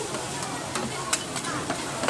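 Fried noodles sizzling on a flat iron griddle while metal spatulas scrape and clack against the plate, with several sharp clinks, the loudest just past one second in.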